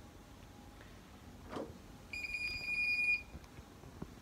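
A single steady electronic beep, about a second long, starting about two seconds in.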